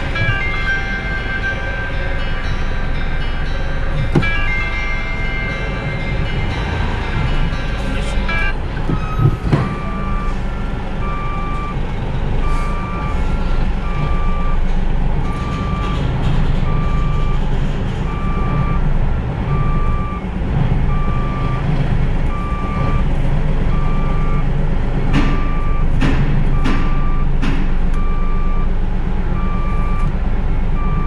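A heavy truck's reversing alarm beeping steadily, about one beep a second, over the low, steady running of the diesel engine as the tractor-trailer backs up. For the first eight seconds or so a string of changing musical tones plays before the beeping starts.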